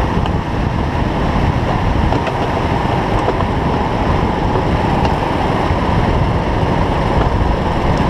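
Go-kart at racing speed heard from onboard: a loud, steady rush of wind on the microphone mixed with the kart's engine running.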